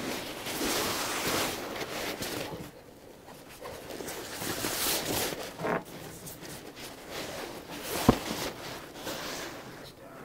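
Nylon kayak skin rustling and crinkling as it is pulled and smoothed over a skin-on-frame kayak frame, in uneven spells, with one sharp tap about eight seconds in.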